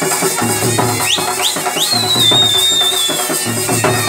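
Gudum baja folk band playing a fast, steady beat on barrel drums. About a second in, a shrill whistle gives three short rising blips, then holds one high note for about a second and a half that sags slightly at the end.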